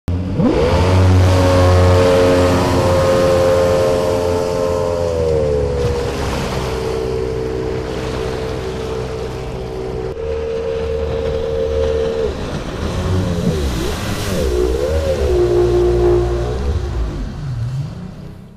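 Outboard jet motor of a SeaArk Predator jet boat running under way. Its pitch climbs in the first second and holds high, eases down about five seconds in, jumps abruptly near ten seconds, then rises and falls several times with the throttle before dropping away near the end.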